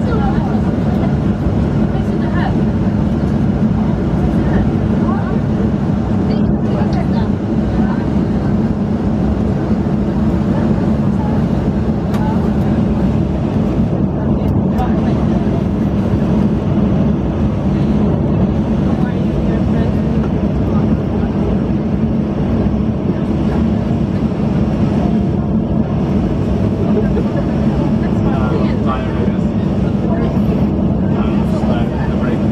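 Cabin noise inside a Boeing 737-800 on the ground: the CFM56 jet engines give a steady hum at low taxi power, with no rise in thrust.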